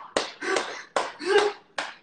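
A man laughing out loud while clapping his hands a few times.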